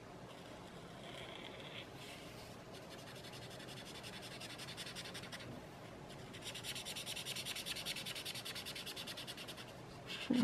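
Sakura brush pen's tip rubbing over paper in quick, short back-and-forth strokes as it fills in a solid black area; faint and scratchy, growing louder and faster about six and a half seconds in.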